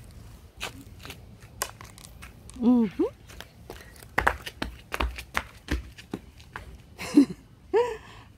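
Flip-flop footsteps of a child hopping along a hopscotch grid on concrete: many sharp slaps and scuffs, with a few heavier landing thumps in the middle. Two short vocal sounds, one about a third of the way in and one near the end, are the loudest things heard.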